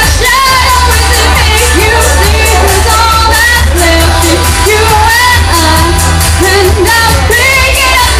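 A woman singing with a live band, with heavy bass and drums, recorded very loud.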